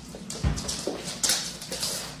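A husky and a cat play-fighting on a wooden floor. There is a dull thump about half a second in, and a few short hissy bursts, mixed with dog vocal sounds.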